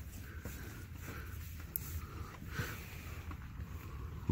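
Faint rustling and crumbling of loose potting soil as a hand pushes down into it, over a low steady rumble.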